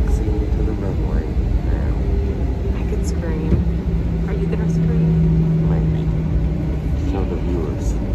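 Airliner cabin noise as the plane rolls for departure: a loud, deep rumble of engines and wheels, with a steady hum coming in about three and a half seconds in and fading out near seven seconds. Faint voices sit under the rumble.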